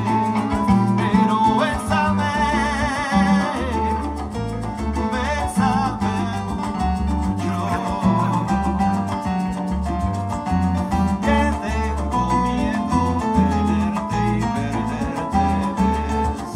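A Cuban band playing live: electric keyboard and bass guitar over hand percussion, with a steady rhythmic bass line.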